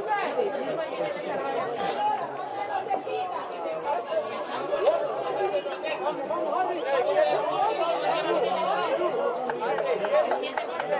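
Several people talking at once: a steady run of overlapping chatter in which no single voice stands out, with a brief knock at the very start.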